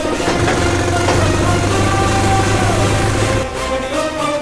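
A vehicle engine running and revving over film background music. It starts about half a second in and cuts off shortly before the end.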